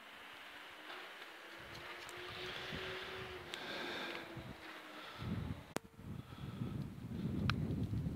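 Faint outdoor background, then wind buffeting the microphone as a low rumble from about five seconds in, with two sharp clicks near the end.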